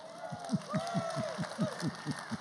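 Congregation applauding, heard faintly as a fast, warbly patter of short falling sounds.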